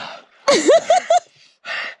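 A person's wavering, pitched vocal cry about half a second in, followed by a sharp breathy gasp near the end. This is a reaction to standing in painfully cold, ice-choked snowmelt water.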